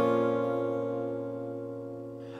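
A single chord from the band's instrument rings out and fades slowly.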